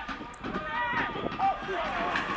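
Distant shouts and calls of voices across an outdoor football pitch, several short calls over a steady crowd-and-ground background.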